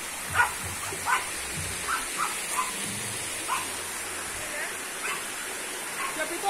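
Steady rush of water running over the rocks of a small creek, with about eight short, faint yelps scattered through.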